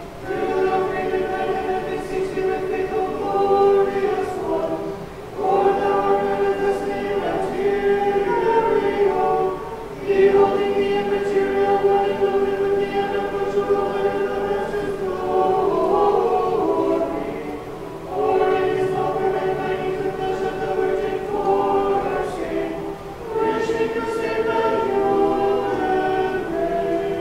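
Small choir singing unaccompanied Orthodox liturgical chant, in held chords sung in phrases of several seconds with brief pauses between them.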